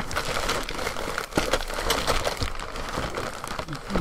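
Clear plastic parts bag crinkling and rustling as it is handled, with many small crackles throughout.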